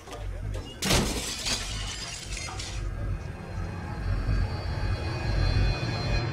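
A mirror's glass smashing about a second in, with shards crackling and falling for about two seconds, over a low, dark music score.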